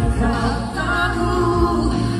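Live vocal duet, a man and a woman singing into hand microphones over musical accompaniment.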